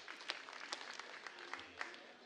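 Faint, scattered applause from a church congregation, with individual claps heard separately at an irregular pace.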